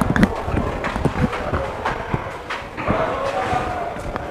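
Footsteps knocking irregularly on hard concrete, a person climbing the stairs of an unfinished building, with faint voices in the background.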